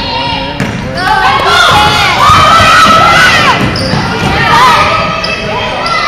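Basketball being dribbled on a hardwood gym floor, with loud high-pitched calls ringing over it from about a second in.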